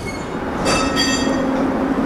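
Steady mechanical hum and rumble with a brief high-pitched metallic squeal a little under a second in.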